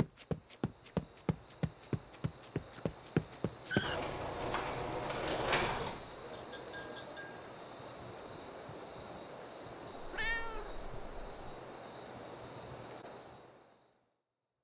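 Animated logo sting with cartoon sound effects: a run of quick, evenly spaced footstep taps, about three a second, for the first few seconds, then a whooshing swell as the logo comes in, and a short cry that rises and falls in pitch about ten seconds in, before the sound fades near the end.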